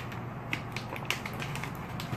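Foil pouch being handled and opened, crinkling in several short, sharp crackles.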